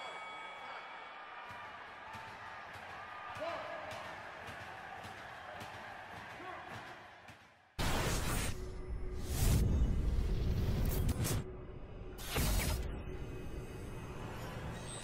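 Logo sting sound effects: whooshes and impact hits with music, in bursts starting about eight seconds in. The loudest burst comes between nine and eleven seconds in, and a shorter hit comes near the end. Before that there is only faint sound.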